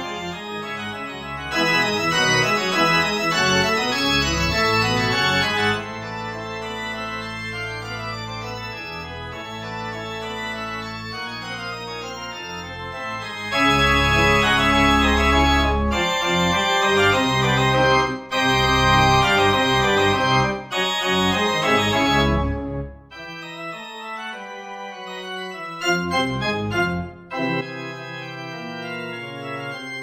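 Organ playing a brisk bourrée in full chords over a pedal bass, with loud passages alternating with softer ones. Near the end it thins to a quiet high melody over held pedal notes.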